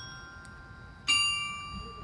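Clock tower bells playing a slow tune. One note fades out, and the next bell note is struck about a second in and rings on, slowly dying away.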